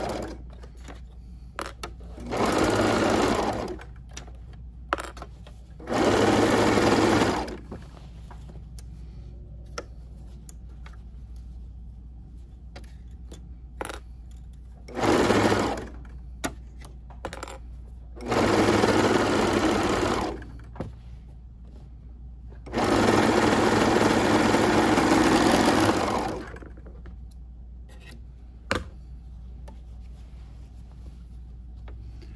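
Juki MO-1000 serger stitching and trimming a seam in fabric, running in five short bursts of one to three and a half seconds, with pauses and small clicks between.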